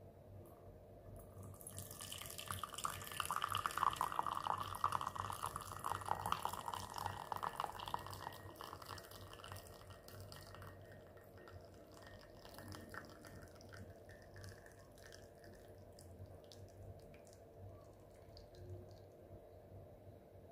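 Coffee poured in a thin stream into a ceramic cup, starting about a second and a half in and loudest for the first several seconds. It then thins to a light trickle and scattered drips as the pour tails off.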